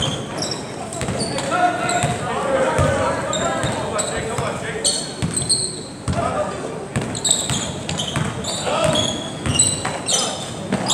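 Basketball dribbled on a hardwood gym floor, repeated thumps with short high sneaker squeaks, over the murmur of crowd voices echoing in the gym.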